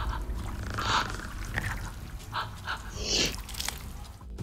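A woman breathing hard in short, irregular gasps, about five breaths, on a film soundtrack.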